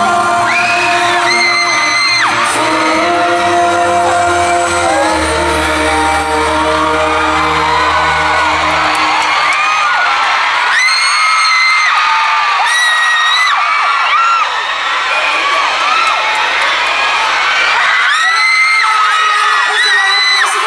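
Live concert: the last held chords of a pop duet ring out, and the band stops about halfway through. A large crowd of fans then cheers, with loud high-pitched screams rising over it three times.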